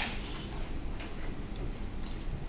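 Two short, sharp clicks, one at the start and another about a second in, over a steady low room hum.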